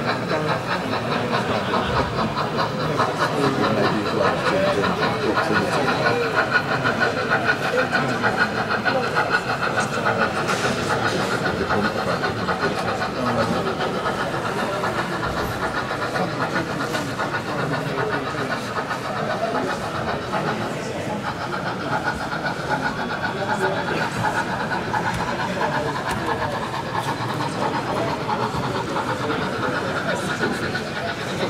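OO gauge model train running along the layout with a steady fast rattle, over the indistinct chatter of an exhibition-hall crowd.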